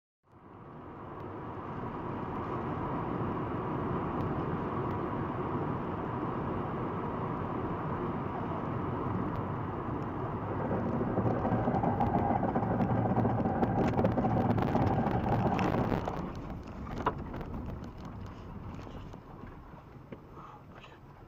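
Road and engine noise of a car heard from inside the cabin as it drives. The noise grows louder about halfway through, drops off suddenly a few seconds before the end, and a single sharp click follows soon after.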